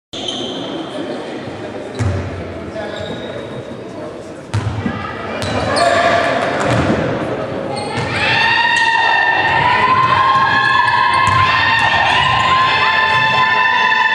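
A basketball bouncing on the indoor court floor, a few separate thuds that echo in a large hall. From about eight seconds in, loud, held, high-pitched shouting voices take over.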